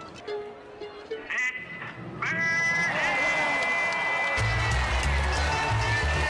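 A film soundtrack: a few short pitched calls, then a long held high note. A heavy bass beat of music comes in about four and a half seconds in.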